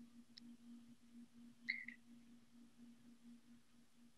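Near silence: room tone with a faint steady low hum, a faint click under half a second in, and a short high-pitched chirp a little under two seconds in.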